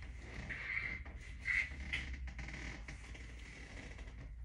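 Faint movement and handling sounds, a few brief soft squeaks and light ticks, over a steady low hum.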